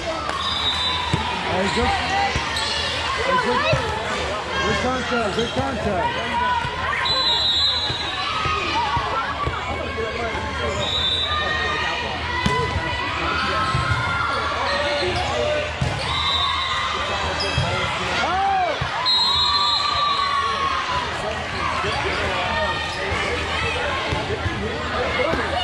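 Indoor volleyball game in a large echoing gym: the ball being hit and bounced, sneakers squeaking on the court, and players' and spectators' voices. Short, high referee whistle blasts sound several times.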